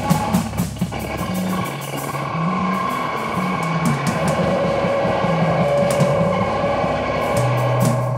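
Experimental rock music from a band with guitar, a moving bass line and drums. The sharp percussion ticks thin out about two seconds in, leaving a held tone over the bass, and return near the end.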